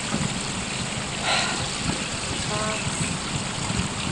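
Steady rushing outdoor noise with low rumbling buffets, and a brief louder hiss about a second in.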